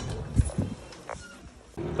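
Handling noise on a phone's microphone: two low thumps close together, followed by a short faint tone.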